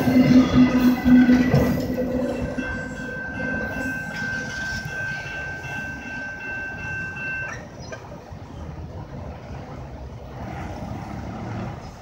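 Freight train of autorack cars rolling past on steel wheels, with rumbling and a steady wheel squeal, fading as the last cars move away. The high squeal cuts off suddenly about seven and a half seconds in.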